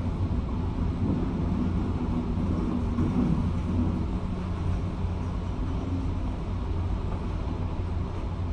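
Steady low rumble of a long-reach demolition excavator's engine and hydraulics working its crushing jaws on a concrete viaduct deck, muffled through a window. The machine strains a little louder between about one and three seconds in.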